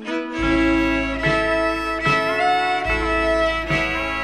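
Instrumental intro of a 1950s country-rockabilly record, a fiddle carrying the melody over guitar, with bass notes coming in about half a second in. The record is played slowed from 45 to 33 rpm, so everything sounds lower and slower than recorded.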